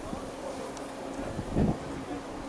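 Wind buffeting an outdoor camera microphone, with a short, louder low gust about one and a half seconds in.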